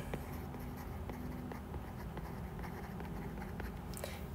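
Faint scratching and tapping of a stylus writing a word on a tablet screen, over steady background hum.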